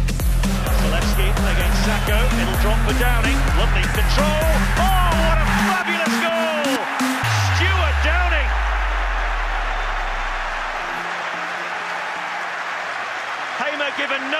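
Electronic dance music with a pulsing bass beat that stops about six seconds in, followed by a deep falling bass drop. In the second half a steady wash of stadium crowd noise carries on and slowly fades.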